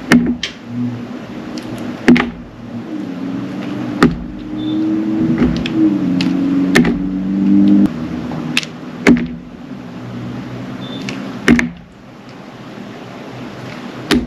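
Metal knife blade slicing and scraping through a soft glycerin soap bar, with a sharp click every second or two, about seven in all. A low steady hum runs from about three to eight seconds in.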